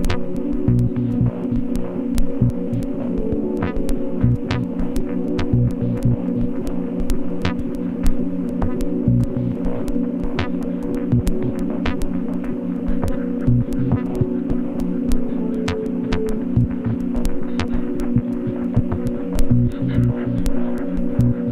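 Glitch dub-ambient electronic music: a steady, throbbing drone of sustained low tones, with sharp clicks scattered irregularly over it.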